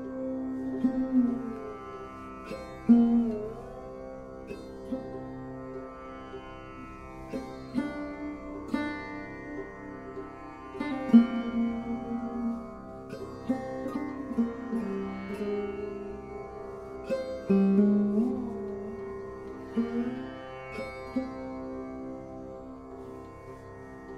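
Sarode playing a solo melody: single plucked notes at uneven intervals, several of them sliding in pitch, over a steady drone.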